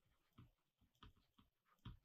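Near silence: room tone with a few faint, soft ticks, the last one near the end.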